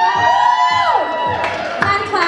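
A woman's voice over a PA holding one long, high call for about a second, with cheering, over DJ music with a steady beat.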